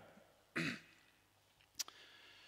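A man gives one short cough to clear his throat, about half a second in. A single sharp click follows near the end.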